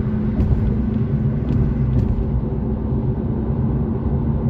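Steady low rumble of road and engine noise inside a moving car's cabin, with a steady hum running under it.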